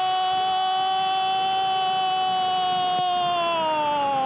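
A football commentator's drawn-out goal cry, one long loud call held on a steady pitch that begins to slide down near the end.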